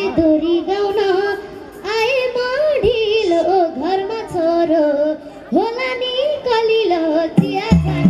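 A young girl singing a Nepali dohori song into a microphone over a PA system, her voice bending and wavering through ornamented phrases. Near the end, low beats of the accompaniment come in.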